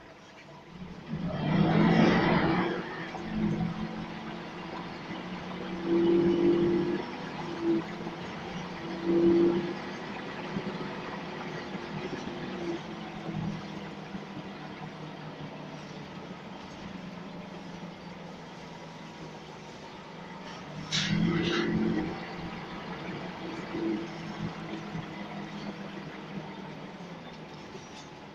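Scania L94UB single-deck bus's diesel engine and drivetrain heard inside the cabin while driving: a steady hum that swells several times as the engine works harder, with a brief hiss a little past the two-thirds mark.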